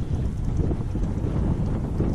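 Wind buffeting the microphone, a steady low rumble.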